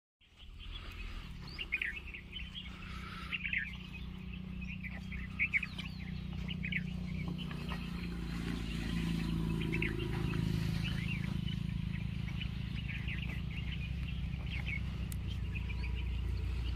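Small birds chirping in many quick, repeated calls over a low, steady rumble that grows slightly louder about halfway through.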